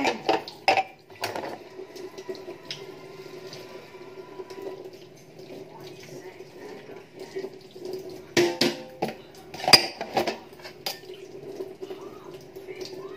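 Dishes and cutlery clattering and clinking as they are handled, in two bursts of sharp knocks: one in the first second or so and another about eight to ten seconds in, over a steady low hum.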